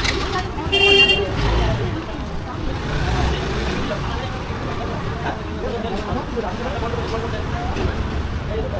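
A vehicle horn gives one short honk about a second in, over steady street traffic noise.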